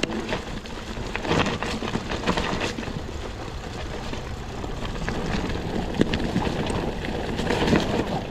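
Mongoose Ledge X1 full-suspension mountain bike running down a steep dirt trail: tyres rolling over dirt and dry leaves, with the bike rattling in scattered clicks and knocks over a steady low rumble.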